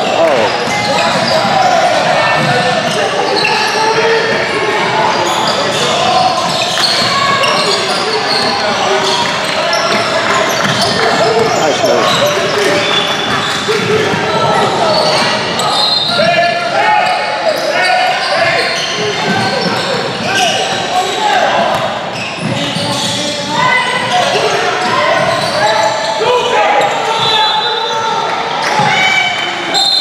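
Indoor basketball game in a large, echoing gym: indistinct voices of players and spectators calling out over one another, with a basketball bouncing on the hardwood court and a few short, high squeaks.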